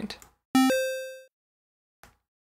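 A square-wave chiptune blip from the Sytrus synthesizer: a short electronic tone that starts suddenly about half a second in, jumps up in pitch in quick steps from its stairs-shaped pitch envelope, and fades out within about a second.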